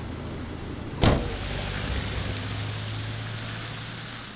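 A vehicle door slams shut about a second in, then the fire brigade ambulance van's engine runs steadily as the van pulls away.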